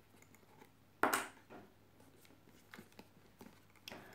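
Quiet handling of rolled newspaper tubes being woven between the stakes of a paper-vine candlestick, with a few faint ticks and rustles. There is one short, sharp sound about a second in.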